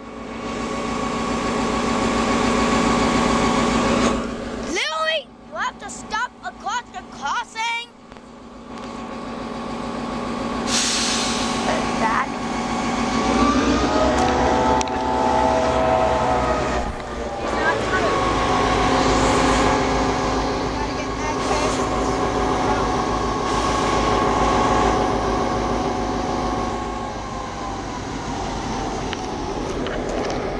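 Diesel locomotive engine running as the locomotive moves past, a steady multi-tone drone. Its pitch rises and then falls once in the middle. Early on, a few seconds in, the drone breaks off briefly under short, choppy sounds.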